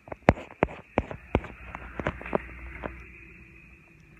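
Handling noise from a hand-held phone: a string of sharp irregular clicks and knocks from fingers on the phone, over a low rumble, thinning out near the end.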